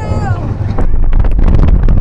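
Magnum XL200 steel roller coaster train running along its track on a bumpy ride: heavy wind rumble on the microphone, joined about a second in by a rapid clatter from the train. A rider's voice trails off at the very start.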